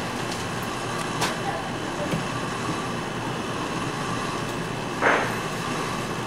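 Steady room noise of a shop with faint voices, a sharp click about a second in and a short noisy burst near the end.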